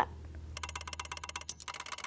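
Background music at the close of a promo: a fast, even ticking of about ten strokes a second over a low steady hum, starting about half a second in.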